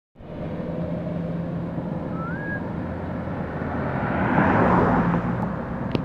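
Vehicle engine running steadily with a low hum and road noise, swelling into a louder rush of noise around four and a half seconds in. A short rising whistle is heard about two seconds in.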